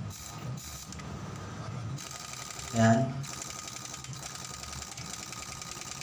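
Pneumatic wrench running on the clutch hub nut of a motorcycle engine, a rapid rattle with air hiss that comes in spells and is heaviest from about three seconds in. It is tightening the nut that holds the clutch hub assembly down over the freshly fitted clutch plates.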